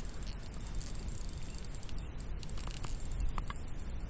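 Steady outdoor background noise with a low rumble on the camera's microphone, and a few light clicks about two and a half to three and a half seconds in.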